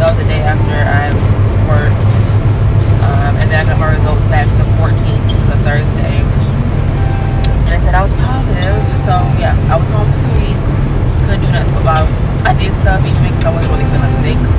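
A woman talking over loud background music, with a steady low bass hum under her voice.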